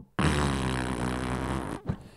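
A long, low, rough sound from a man's throat, held at one pitch for about a second and a half and then cut off.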